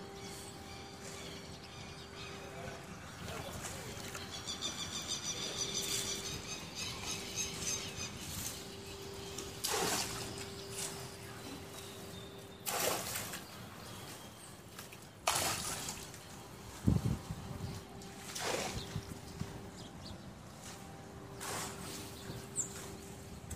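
Floodwater sloshing and splashing in several short swishes, with one sharp thump about seventeen seconds in. A rapid high chirping runs from about four to eight seconds in, over a faint steady hum.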